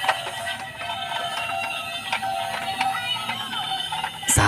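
Battery-powered Tayo 'Frank' fire-truck toy switched on and running, its built-in sound module playing an electronic song.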